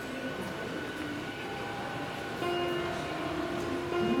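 Underground railway station ambience: a train's rumble and hum carried through the concourse. About two and a half seconds in it grows louder as steady pitched tones join in.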